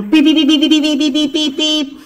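Battery-powered toy police truck's electronic siren sound, warbling rapidly back and forth between two pitches and stopping just before the end.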